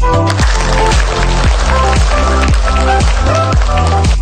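Upbeat dance music with a steady beat of about two a second, with an audience's applause underneath.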